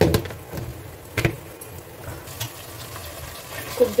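Mutton and masala frying quietly in an aluminium pressure-cooker pan, with a few sharp knocks of kitchen utensils, the loudest right at the start and again about a second in.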